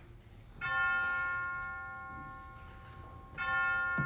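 A bell struck twice, about three seconds apart, each strike ringing out and slowly fading.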